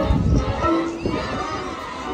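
High school marching band playing, with a heavy low drum hit at the start and held brass notes over it.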